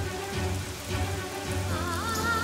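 Heavy rain falling, laid over a background music score with a bass pulse about twice a second. Near the end a wavering melody comes in over it.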